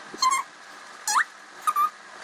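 Felt-tip marker squeaking on paper as words are written, in three short strokes, the middle one rising in pitch.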